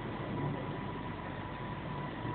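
Steady background hum with a faint, thin high tone running through it.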